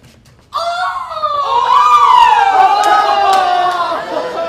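Loud screaming by more than one voice. It starts suddenly about half a second in and holds for about three seconds, slowly falling in pitch.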